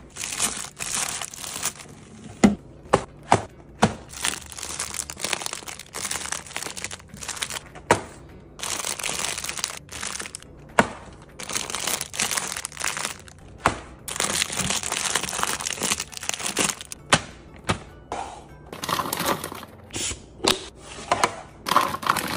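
Plastic-wrapped snack cakes crinkling as they are handled and set into clear plastic organiser bins, with many short sharp taps and clicks of packages and plastic knocking together.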